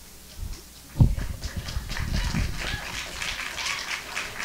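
Microphone being handled at a podium, picked up through the PA: a sharp thump about a second in, then a run of rubbing and knocking noises.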